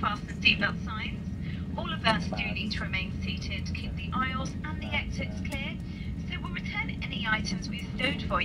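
Speech over the steady low hum of an airliner's cabin while the aircraft taxis after landing.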